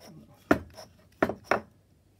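Steel barrel arbor knocking against the bored beech barrel as it is worked out of the bore by hand. Three sharp knocks with a slight metallic ring: one about half a second in, then two in quick succession past the middle.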